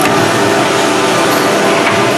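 CNC machining center running with its coolant spraying: a loud, steady machine drone made of several steady tones over a hiss.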